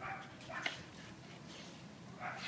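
Faint sounds of a brindle shelter dog close to the microphone, with one short light click about two-thirds of a second in, then quiet.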